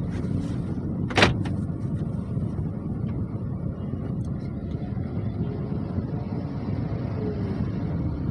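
Steady low rumble of a car idling in traffic, heard from inside the cabin. A single sharp click about a second in stands out above it, followed by a few fainter ticks.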